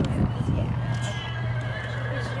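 A horse whinnying in one long call, over a steady low hum.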